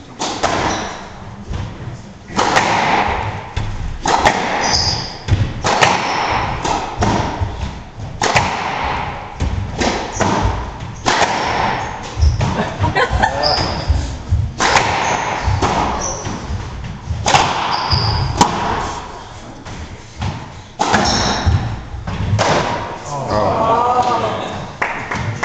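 Squash rally: the ball struck by rackets and smacking off the court walls, giving a run of sharp thuds at an uneven pace, with a few short high squeaks between them.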